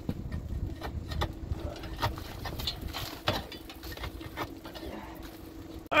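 Irregular knocks, scrapes and crumbling as caked, frozen corn residue is broken out of a metal grain dryer opening by a gloved hand. A faint steady hum runs underneath.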